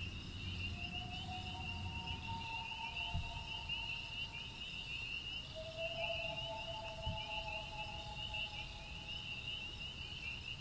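Night insects trilling in a fast, steady chirp, over soft ambient music. The music is made of held two-note tones that sound twice, once about a second in and again from about halfway to near the end.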